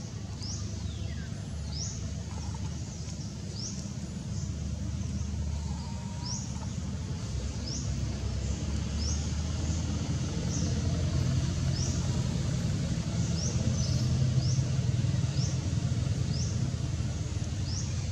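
A bird's short, high chirp repeated about once a second, over a steady low rumble that grows louder from about halfway through.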